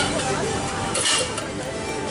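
Faint voices over a steady outdoor hiss, with brief hissing sounds about a second in.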